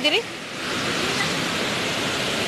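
Steady rush of water from Tinuy-an Falls, a wide, multi-tiered waterfall, growing a little louder about half a second in and then holding even.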